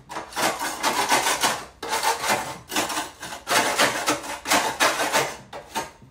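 Hand sanding a wooden board with a sanding block: rapid back-and-forth rubbing strokes in a few runs broken by short pauses.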